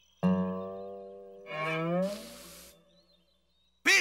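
Cartoon musical sting: a twangy note that starts suddenly and fades over about a second, then a note sliding upward in pitch, ending in a short burst of hiss.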